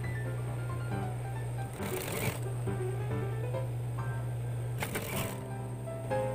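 Industrial sewing machine stitching a rib-knit collar onto a jersey neckline: a steady hum with two brief louder bursts about two and five seconds in.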